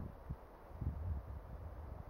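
Faint outdoor ambience: an uneven low rumble of wind on the microphone, a little stronger about a second in.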